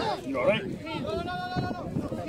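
A person laughing, then one long, high, drawn-out vocal cry lasting most of a second.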